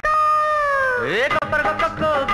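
A woman's long sung call from a film song, held on one high note and slowly sliding down for about a second, then a quick upward swoop, after which the song's instrumental accompaniment comes back in.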